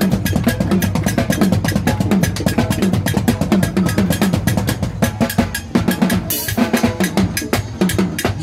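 Acoustic drum kit played fast and hard: rapid snare and tom strokes over bass drum, with a cymbal crash about six seconds in.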